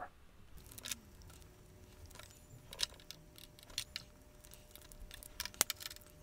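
Faint scattered clicks and light rattles of thin aluminium plates in heat-shrink tubing being handled, with plastic spring clamps clipped onto them, the sharpest clicks near the end.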